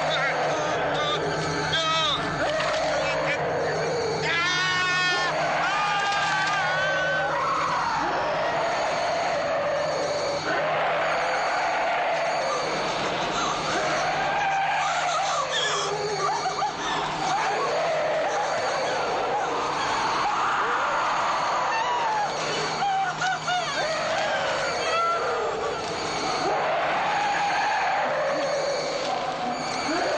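A monster's continuous shrill screeching, made of wavering cries that rise and fall over and over, mixed with a woman's screams of terror.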